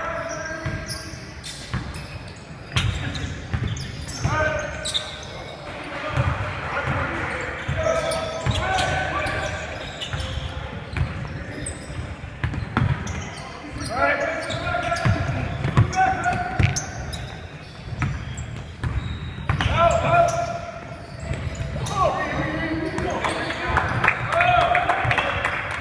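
Basketball game on a hardwood gym floor: a basketball bouncing with dull thumps, and sneakers squeaking in short high chirps several times as players cut and stop.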